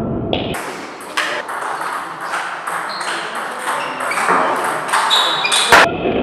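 Table tennis rally: the ball clicking off the rackets and the table in quick succession, a few hits a second, ending with a sharper hit.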